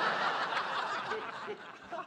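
Studio audience laughing at a punchline, loudest at first and fading out over the second half.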